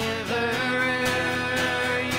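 Worship song: a voice singing held notes over guitar accompaniment.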